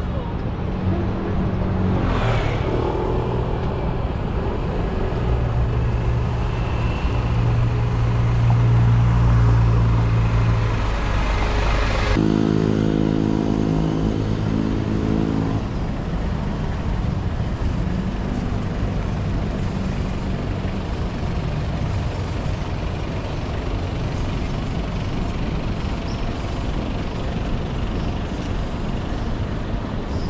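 City street traffic: motor vehicle engines running and passing. A low engine hum swells about eight to ten seconds in and cuts off sharply around twelve seconds, followed by a few seconds of a steadier pitched engine note, then lighter traffic noise.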